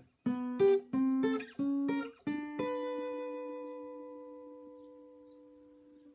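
Acoustic guitar playing a short riff of plucked two-note shapes slid up the neck on a G chord, a few notes in the first couple of seconds, then the last one left ringing and slowly fading over about three seconds.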